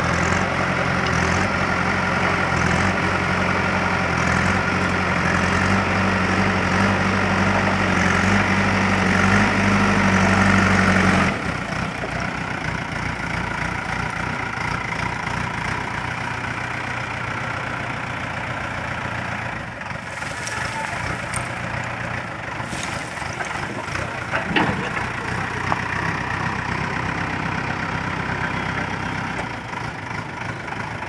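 JCB backhoe loader's diesel engine working under throttle while the front bucket digs into rubble, then dropping suddenly to a lower, quieter running speed about eleven seconds in as the loaded bucket is raised and moved. A single sharp knock comes a little past the middle.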